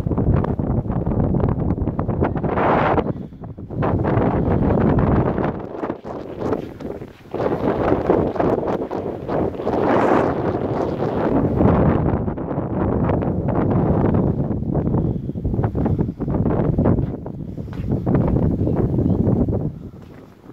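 Wind buffeting the microphone in gusts: a loud, rumbling rush that swells and eases, dropping away briefly a few times.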